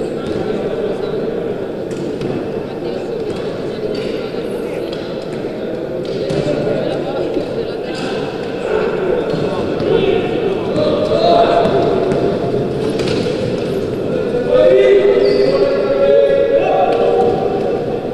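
Basketball bouncing on a wooden court, with scattered knocks and indistinct shouted voices that echo in a large sports hall. The shouting grows louder in the second half.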